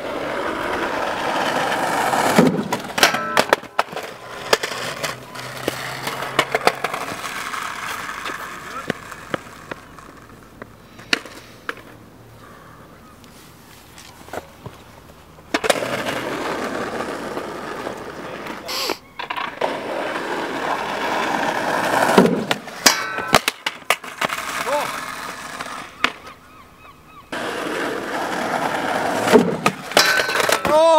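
Skateboard wheels rolling over tarmac on three approaches. Each run ends in a cluster of sharp clacks as the board is popped and hits the steel rail or the ground.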